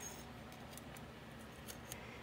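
A few faint, small metallic clicks of a copper plant label being fitted onto its wire stake, the label's hooks catching on the wire, with a couple of clicks near the end.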